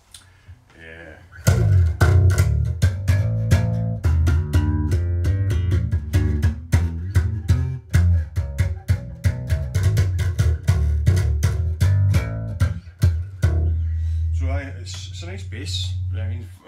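Amplified five-string electric bass guitar played in a fast run of plucked notes with sharp, percussive attacks, starting about a second and a half in. Near the end a low note is held and rings on.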